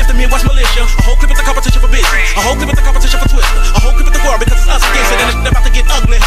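Hip-hop track: rapping over a beat with deep bass and regular drum hits.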